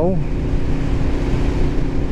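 Aprilia RSV4 1100 Factory's V4 engine holding a steady drone while cruising at about 55 mph in sixth gear, under constant wind rush.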